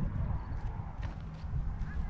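Outdoor walking sound: a few footsteps under a low, uneven rumble of wind on the microphone, with a short chirping bird call near the end.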